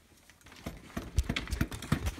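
A quick run of about six knocks and thumps from a Roadmaster Granite Peak mountain bike's front suspension fork as it is pushed down and bounced, starting about half a second in.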